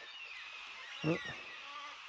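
Faint outdoor evening background of small birds chirping, with a few short downward-sliding calls, over a steady high insect hum.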